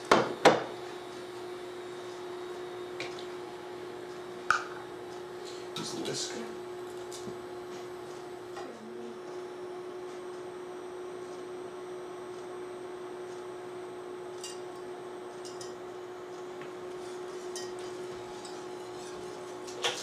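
Portable induction cooktop running with a steady hum while heating a saucepan of sugar syrup. A few sharp metal clinks from a whisk against the stainless steel saucepan come near the start and again around the middle.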